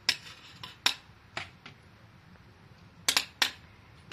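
Metal serving spoon knocking against the dishes as salad is scooped and served onto a ceramic plate: about six separate sharp clinks, with two close together near the end.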